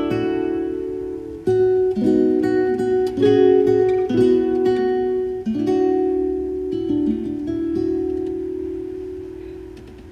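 Solo nylon-string classical guitar playing a closing phrase of plucked notes and chords; the last chord, struck about halfway through, is left to ring and fades out, ending the piece.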